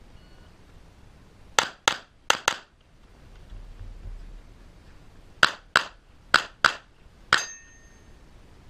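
Handgun shots: four quick shots about one and a half seconds in, a pause of about three seconds, then five more shots, the last with a brief ringing tail.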